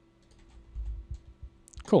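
A few faint, light clicks of a computer keyboard and mouse over a faint steady hum, followed by a short spoken word near the end.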